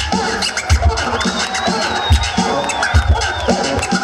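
A DJ scratching vinyl on turntables over a hip-hop beat with a heavy kick drum. The scratches come as quick back-and-forth pitch sweeps, and a thin wavering high tone sits over the beat through the middle.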